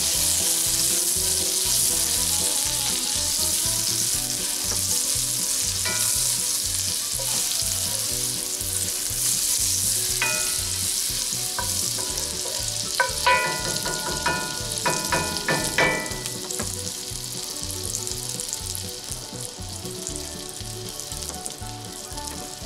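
Butter sizzling and frying in a hot cast iron skillet as a wooden spatula pushes it around, the sizzle easing somewhat in the second half after the heat is turned down. A few sharp clinks with short ringing tones come in a cluster over the middle.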